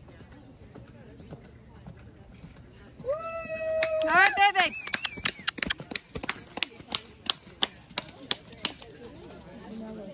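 A horse neighing: one long call held level for about a second, then breaking into a wavering trill. After it comes a string of sharp clicks, about three a second, that fade out.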